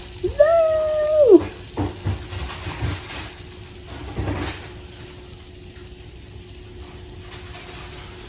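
A high-pitched excited squeal lasting about a second, followed by light clicks and knocks of plastic pop-it fidget spinners being handled, over the faint steady whir of the spinners turning.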